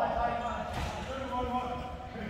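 Futsal players calling out to each other across a large gym, with a falling shout at the start and further calls about a second in, over the thuds of the ball on the wooden court.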